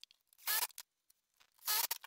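Two short scrapes of a plywood frame sliding against a wooden bench top, one about half a second in and a longer one near the end, followed by a few light knocks as the frame is lifted.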